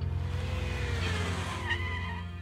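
A car pulling up and skidding to a stop, a swelling hiss of tyres with a faint falling squeal, over a low steady drone of film score.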